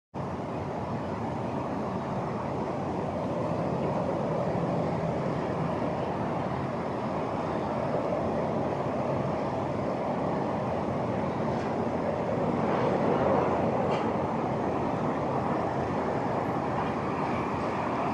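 Steady hum of distant city traffic: an even rumble with no distinct events, swelling slightly about two-thirds of the way through.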